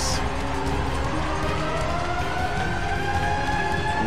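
Arena goal siren winding up, one long tone rising slowly in pitch, signalling a goal, over a crowd cheering.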